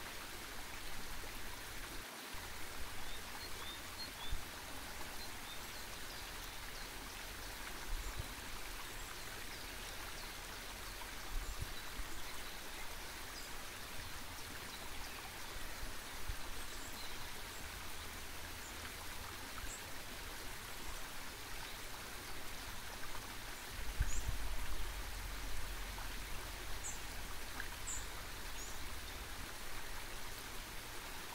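Mountain stream rushing over rocks in a steady, even wash of water, with a deeper low rumble swelling for a few seconds about two-thirds of the way through.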